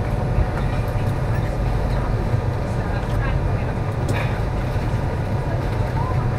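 Steady low rumble and hum inside a Class 390 Pendolino electric train carriage, with a few faint scattered clicks.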